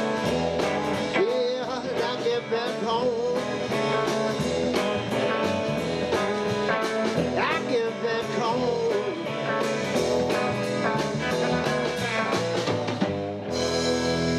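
Live band playing a blues-rock song: a man singing over electric bass, guitar and drums with a steady beat. The drumming stops shortly before the end while held notes carry on.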